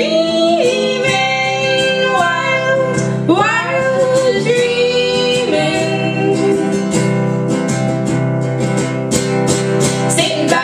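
Live acoustic folk song: acoustic guitar and a stick-beaten hand drum under women's voices singing long held notes in harmony, swooping up into some of them.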